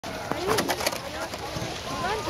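Distant voices of people calling and shouting outdoors, with a few short sharp clicks or crunches in the first second.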